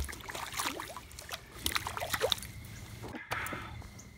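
A hooked small bass splashing at the surface beside the boat: a run of irregular splashes and sharp clicks.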